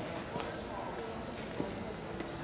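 Low murmur of voices with a few soft hoof steps from horses walking on dirt arena footing.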